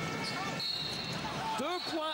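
Referee's whistle blowing to stop play for a foul: one steady high-pitched blast of about a second, over the constant crowd noise of a basketball arena, with a short second toot near the end.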